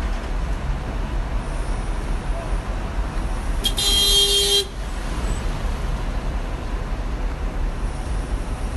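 Steady low rumble of an idling coach bus, with a vehicle horn honking once for about a second midway.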